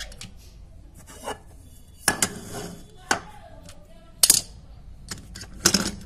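Small die-cast metal toy cars clinking and rattling against a ceramic bowl and each other as a hand rummages among them. There are several sharp clinks, the loudest about two seconds in and just past four seconds.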